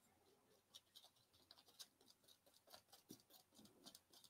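Near silence with faint, irregular scrapes and ticks of a metal palette knife working paint on the palette.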